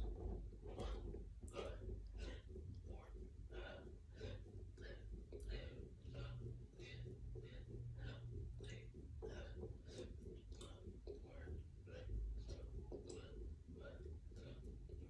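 A man's short, sharp breaths during a fast set of push-ups, about two a second and in time with the reps, faint over a low room hum.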